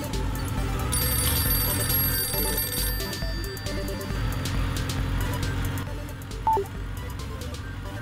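Background music with a mobile phone ringing for an incoming call, and a short, loud tone about six and a half seconds in.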